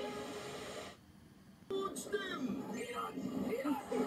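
Japanese TV variety-show soundtrack playing from a television: a steady noisy stretch, a short drop in level about a second in, then voices with music behind them.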